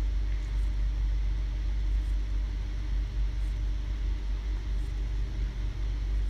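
Steady low rumbling hum of background noise with no speech, level and unchanging throughout.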